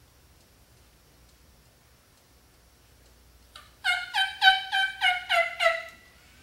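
A turkey gobble: a quick rattling run of about eight notes, each dropping in pitch, lasting about two seconds. A faint short note comes just before it, after some seconds of near silence.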